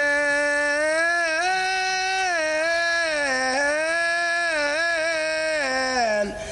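A lone male voice of a Saudi folk troupe singing one long drawn-out line without accompaniment, holding notes and sliding slowly up and down in pitch.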